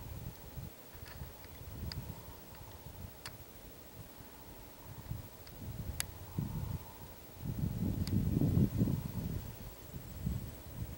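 Low, uneven rumbling on the camera's microphone, swelling loudest about three-quarters of the way through, with a few faint sharp ticks.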